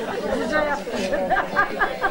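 Several voices talking at once: chatter in a hall.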